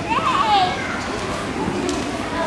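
Children's voices chattering, with one child's high voice rising and falling briefly in the first half-second or so.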